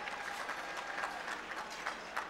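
Audience applause, many hands clapping, tapering off.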